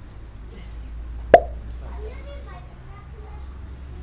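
Faint background voices chattering, with a single sharp, loud click or slap about a second and a half in.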